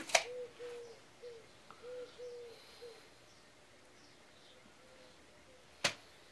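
A dove cooing faintly in the background: a run of short soft hoots at one pitch, two or three a second, fading out about halfway through. A sharp click just after the start and another near the end.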